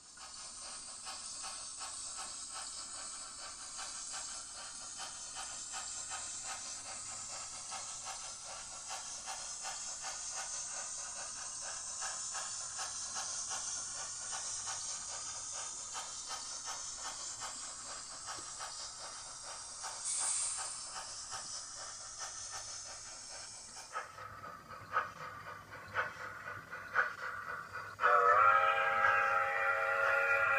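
Steam train sound: a steady hiss of steam with a fast run of ticks beneath it. About 24 seconds in the hiss stops, leaving scattered clicks, and a whistle-like pitched tone sounds near the end.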